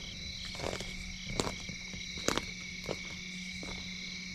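Steady evening chorus of insects and frogs, a high-pitched drone that holds level throughout, with two faint clicks in the middle.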